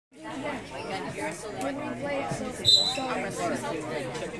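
Overlapping chatter from people in a gym. About two and a half seconds in comes a short, loud blast of a referee's whistle, the signal that starts the wrestling bout.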